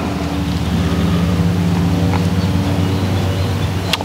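An engine or motor running steadily with an even, unchanging hum.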